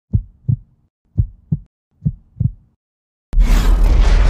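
Heartbeat sound effect: three low double thumps, lub-dub, about one a second, then a sudden loud boom a little after three seconds in that carries on as a heavy low rumble.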